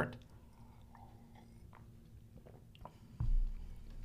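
A man swallowing sips of a drink from a glass, with faint wet mouth and swallowing sounds. A little past three seconds in comes a dull, low thump as the glass is set down.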